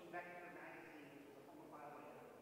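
Faint, distant man's voice lecturing, heard from across a large room.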